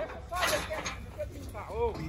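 Men shouting across a bull-riding corral, with wind rumbling on the microphone.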